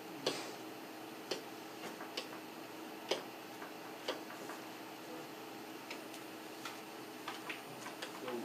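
Faint, irregular clicks and taps, about a dozen scattered through the pause, over a steady room hiss.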